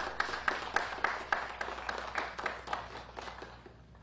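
A small audience applauding: a few people clapping, dying away near the end.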